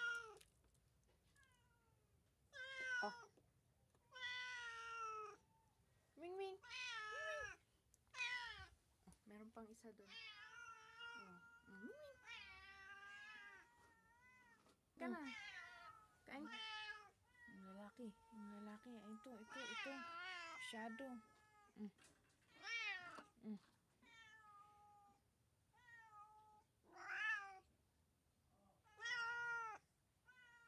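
Domestic cats meowing over and over, a string of separate calls about a second long. Through the middle the calls come closer together and waver.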